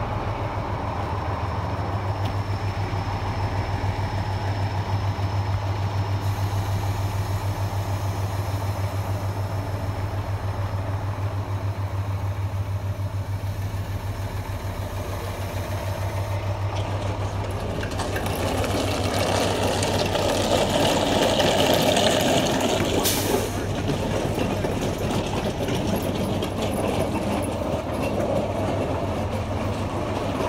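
Diesel engine of a fire apparatus running steadily, a deep even drone with a fine regular throb. Past the middle a louder rushing noise swells for a few seconds and then cuts off abruptly.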